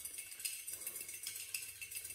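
Xóc đĩa counters rattling inside a white porcelain bowl held tight over a plate and shaken by hand: a quick, irregular run of small clicks that dies away near the end, the shake of a xóc đĩa round.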